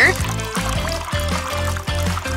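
A thin stream of water trickling onto a plate, under background music with a steady bass line.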